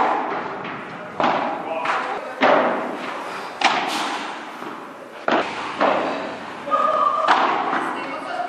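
Padel rally: a ball knocked back and forth with solid paddles and off the court and glass walls, about nine sharp knocks at uneven spacing, each echoing in a large hall.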